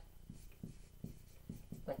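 Dry-erase marker writing on a whiteboard: a run of faint, short strokes as words are written out by hand.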